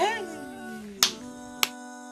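A woman's voice trails off a drawn-out word with a falling pitch, then two sharp finger snaps come about half a second apart. Under them a sustained note of background music holds steady.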